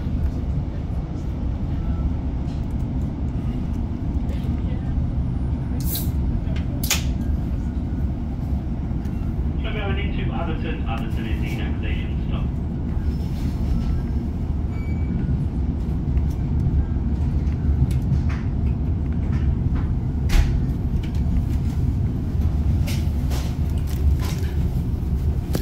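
Class 156 diesel multiple unit on the move, heard from inside the passenger saloon: a steady low rumble from the underfloor diesel engine and the wheels on the rails, with a few short sharp clicks.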